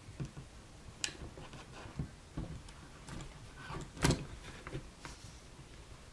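Scattered light clicks and knocks of a laptop's LCD panel being handled and fitted back into the plastic lid frame, the loudest knock about four seconds in.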